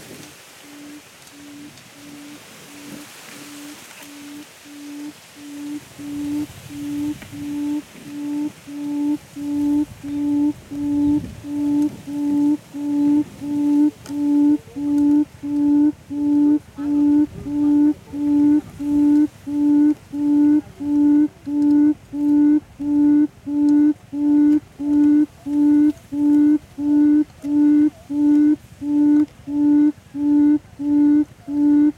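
A buttonquail's low hooting call, one deep hoot repeated about three times every two seconds. It grows louder over the first fifteen seconds or so, then holds steady.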